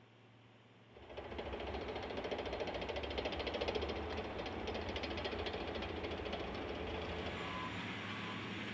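Compaction roller running as it rolls over loose fill, a steady engine-and-drum noise with a fast even rattle that starts about a second in.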